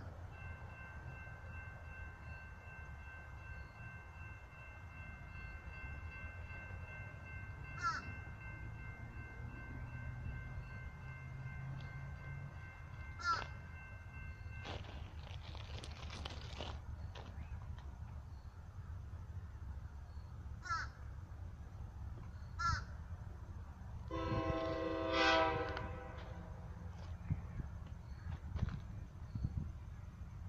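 Distant train horn, a K5LA chord, held in one long blast for about fifteen seconds, then a second shorter blast about ten seconds later that is the loudest sound, all over a low rumble; short bird calls break in every few seconds.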